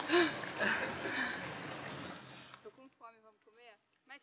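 Straw broom bristles scraping and dragging over a dirt path while the wheelchair holding it is pushed along, with a few stronger swells about every half second and a brief voice sound at the start. The scraping fades out about two and a half seconds in, leaving faint talk.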